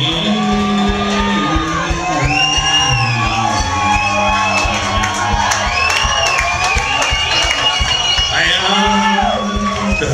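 A bluegrass string band playing live, with banjo, mandolin and a one-string gas-tank bass holding steady low notes. Repeated whoops and shouts rise and fall over the music.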